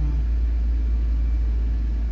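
A steady, loud low rumble, with no speech over it.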